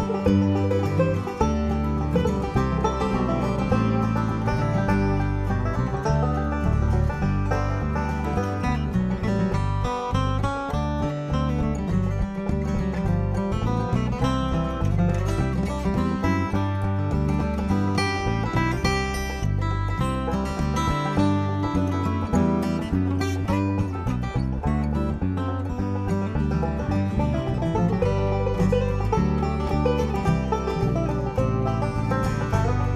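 Bluegrass instrumental break: a five-string banjo, a steel-string acoustic guitar and a bass guitar playing together with steady bass notes underneath, no singing.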